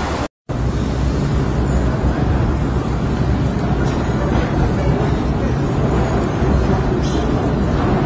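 Steady low rumble of city background noise, with a brief total dropout near the start.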